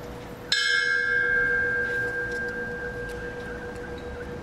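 A bell struck once about half a second in. Its clear, high tone rings on and fades slowly.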